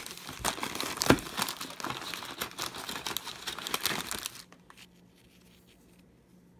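Plastic wrapper and tray of an Oreo cookie package crinkling and crackling as a hand pulls cookies out, with one sharper crack about a second in. It stops about four and a half seconds in.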